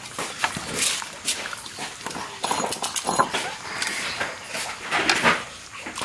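A metal ladle clinking and scraping in a metal soup pot as soup is scooped up and poured into bowls, in a run of irregular small clicks with a splash of pouring liquid near the end.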